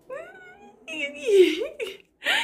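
A woman's high-pitched, wordless squeals of delight in two drawn-out stretches, the second louder.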